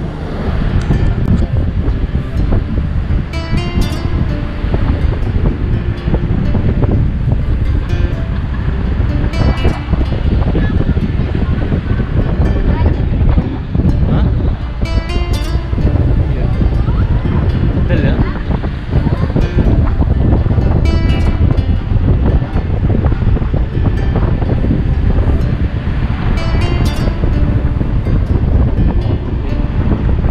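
Steady low road and engine rumble of a car on the move, with music playing over it.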